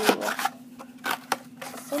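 Scissors cutting through a cardboard toilet paper roll: a few sharp snips and a crunching scrape of cardboard, loudest in the first half-second.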